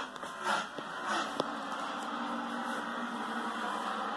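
A stock car race broadcast playing on a television in a small room: a steady drone of race car engines coming through the TV's speakers, with a faint click about a second and a half in.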